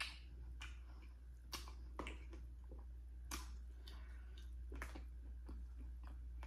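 Close-up eating sounds of someone biting and chewing sauce-coated corn on the cob: about half a dozen sharp, wet mouth clicks and smacks, irregularly spaced, over a steady low hum.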